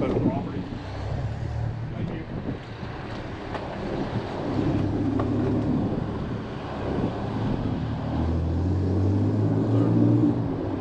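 Road traffic running on the road below, a steady low rumble with wind on the microphone. A heavier engine drone builds over the last two seconds.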